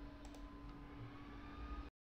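Three faint, short clicks in the first second over a steady low hum of the recording.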